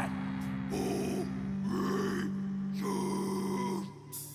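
A death metal band holding a low droning note while the vocalist lets out short guttural growls over it. The drone cuts off just before the end.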